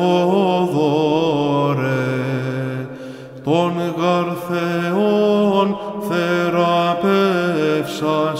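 Greek Orthodox Byzantine chant: a male voice sings a long, ornamented melisma on a held vowel over a sustained low drone note. There is a brief break about three seconds in before the melody resumes.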